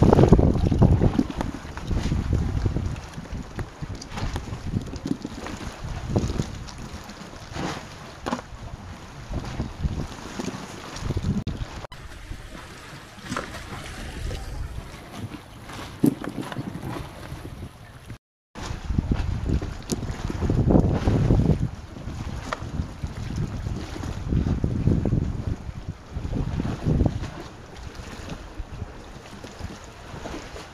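Wind buffeting the microphone over sea water sloshing against a barnacle-covered concrete pillar and a small boat, in irregular low gusts, with scattered small clicks and knocks. The sound cuts out completely for a moment just past halfway.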